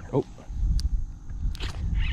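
A man's short startled "oh" at a bite, then low rumbling handling noise and a few sharp clicks as the fishing rod is snatched up from its holder.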